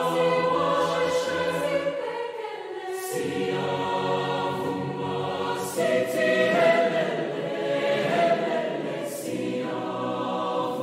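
Choral music: voices singing slow, sustained chords that change every few seconds.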